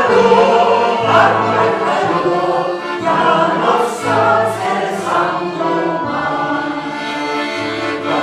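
A congregation of men and women singing a Christian song together in slow, held notes.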